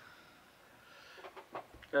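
Mostly quiet room tone, then a few faint, light clicks as hands handle fly-tying materials and tools near the end.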